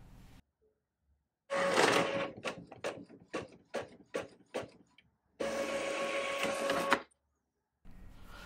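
Epson L3150 inkjet printer starting a print job: a motor whir, then a run of about eight clicks, then a second steady whir about five seconds in that cuts off suddenly.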